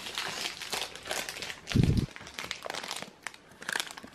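Plastic chocolate bar wrapper crinkling and rustling in the hand in a run of short crackles, with a dull thump about two seconds in.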